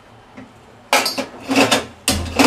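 Metal clinks and clatter at a gas stove as it is being turned on: a quick cluster of sharp strikes about a second in.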